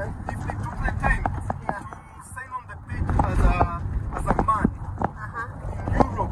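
Indistinct talking inside a moving car, over the steady low rumble of road noise.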